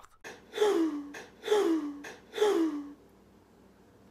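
A man sobbing: three breathy, gasping cries about a second apart, each falling in pitch.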